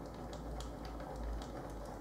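Faint, irregular clicks of typing on a computer keyboard over a low steady hum.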